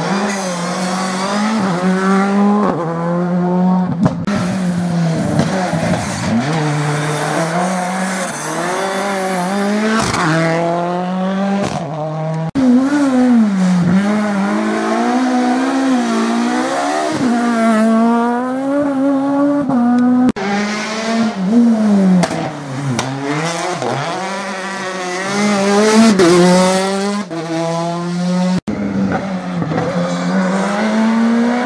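Rally cars taking a tight hairpin one after another: engines revving hard, dropping and rising again through gear changes, with some tyre squeal. Among them is a Škoda Fabia R5. The engine note breaks off abruptly several times as one car's pass gives way to the next.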